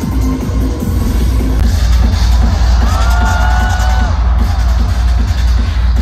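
Live electronic dance music played loud over a festival stage sound system, driven by a steady heavy bass beat. About three seconds in, a held higher synth or vocal line comes in over the beat for about a second.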